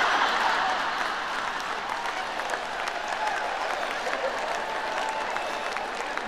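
Audience applauding, loudest at the start and slowly dying down.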